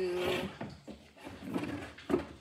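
Wooden dresser drawer being pulled open, wood sliding on its runners with an uneven rubbing sound.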